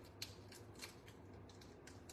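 Faint scattered ticks and crackles of a thin die-cut paper piece and its adhesive sheet being handled and pressed down by fingertips.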